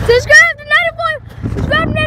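A high-pitched voice calling out in wavering bursts that stop a little past halfway, over a steady low hum.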